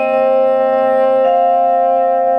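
Contemporary chamber ensemble holding sustained notes, including French horn, over soft marimba strokes from yarn mallets. A new, higher held note comes in just over a second in.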